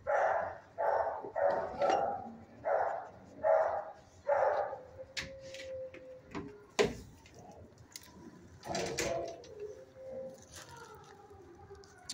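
A dog barking in a kennel room: about seven barks in quick succession over the first five seconds, then a single bark near nine seconds, with quieter drawn-out calls near the end.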